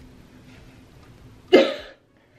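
A woman coughs once, sharply, about one and a half seconds in, over a faint steady hum of room tone.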